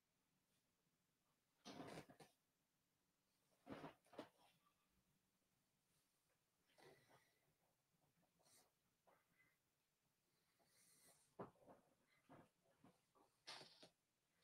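Near silence: room tone, broken by a few faint, brief soft noises, about two and four seconds in and twice near the end.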